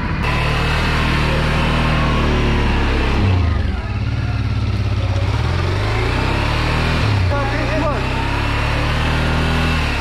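Adventure motorcycle engines idling steadily at a standstill, with short throttle blips a few seconds in and again near the middle-to-late part.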